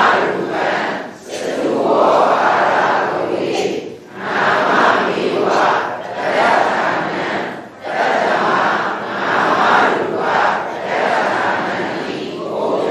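Many voices reciting a text aloud together in unison, in phrases of a second or two with short pauses between.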